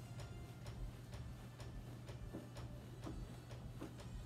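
Faint, fairly regular taps at about two a second, the pace of skipping rope.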